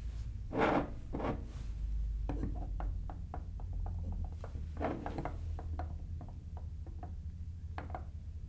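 Hand-held outside micrometer being handled and closed on an aluminium part on a wooden bench: a few rubbing and shuffling handling sounds, then a run of faint light clicks, several a second, as the thimble is turned down onto the part, over a low steady hum.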